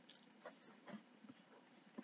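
Near silence: room tone, with two faint soft clicks about half a second and a second in.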